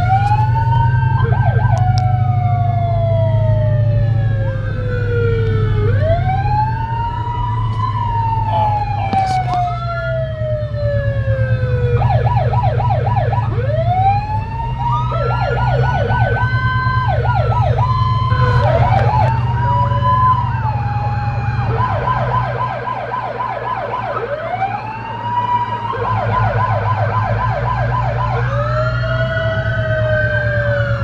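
Several vintage police car sirens sounding together. Wailing sirens wind up, peak and slowly glide down, while fast yelping sirens run in bursts between them, over a steady low rumble.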